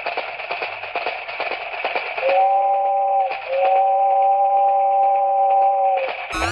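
Rapid clicking of small plastic dominoes from a toy domino-laying train, then a steady electronic tone held for about three seconds, broken once briefly.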